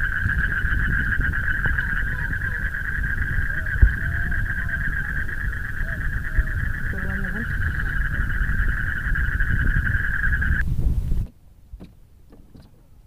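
A steady, high-pitched chorus of insects droning with a rapid pulse, over a low rumble and one thump about four seconds in; the chorus and rumble cut off abruptly about eleven seconds in.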